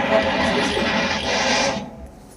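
Film trailer soundtrack, a dense mix of music and sound effects with faint dialogue, played from a phone through the microphone and PA; it cuts off suddenly near the end.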